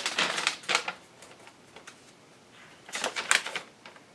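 Sheets of paper rustling and crinkling as they are handled and laid flat on a table, twice: briefly at the start, and again about three seconds in.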